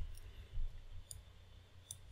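A few faint, scattered clicks from a computer's keyboard and mouse being worked at a desk, one near the start and others about half a second, a second and two seconds in.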